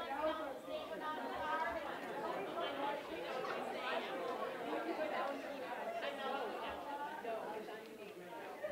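Crowd chatter: many people talking at once, with no single voice standing out, at a steady level.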